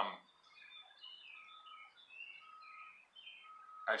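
Faint birdsong: many quick high chirps, with a clear whistled note repeated three times.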